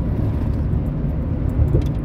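Steady low rumble of road and engine noise heard inside a vehicle's cabin while driving at freeway speed.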